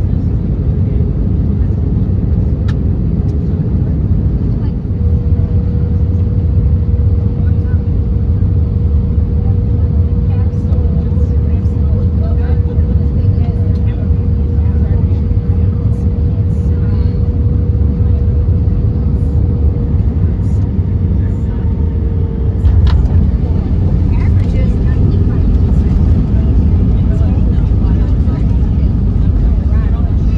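Airbus A319 cabin noise on final approach: a steady rumble of engines and airflow with a thin steady hum. About 23 seconds in, a sharp thud marks the main wheels touching down, and the rumble grows louder on the rollout with the spoilers raised.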